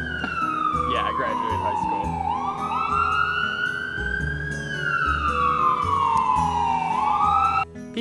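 Emergency vehicle siren on a slow wail, its pitch falling, rising and falling again, cut off suddenly near the end.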